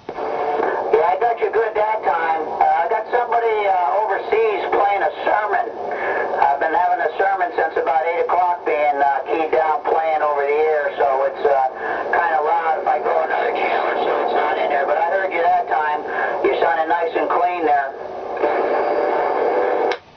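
CB radio speaker on channel 28 carrying garbled, narrow-band voice traffic received by skip, over steady static, with a short break near the end.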